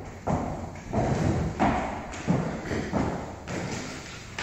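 Footsteps on a wooden floor and steps: a slow series of thuds, roughly one every half second to second, as a person walks.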